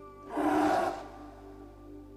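Background music holding steady sustained tones, with a loud breathy gasp about half a second long near the start.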